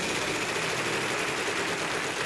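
Game-show prize wheel spinning, its rubber pointer flapper clicking rapidly and evenly against the pegs around the rim.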